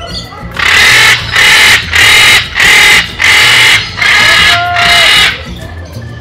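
Parrot screeching: six loud, harsh calls in a row, each about half a second long, with a short whistle near the end.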